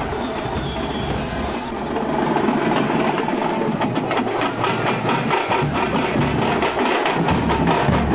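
A troupe of dollu drums, the large barrel drums of Karnataka, beaten with sticks in a fast, dense rhythm. The drumming gets louder and sharper about two seconds in.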